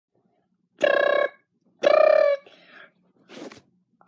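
Two short, high, steady-pitched rings about a second apart, like a telephone ringing before a call is answered, followed near the end by a brief faint noise.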